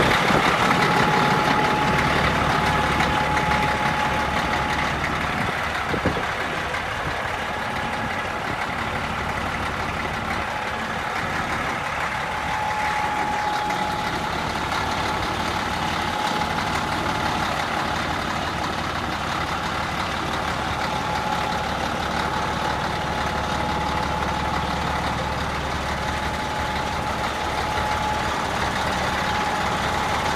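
Caterpillar 1674 diesel engine in a heavy truck, idling steadily, with one short knock about six seconds in.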